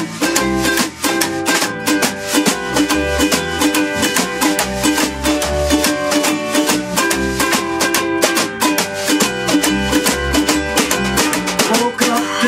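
An acoustic swing trio plays an instrumental passage: strummed ukulele, plucked upright bass and a snare drum keeping a brisk beat.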